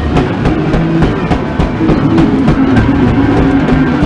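Loud live noise-rock improvisation: a drum kit struck in quick, dense hits over held low instrument tones.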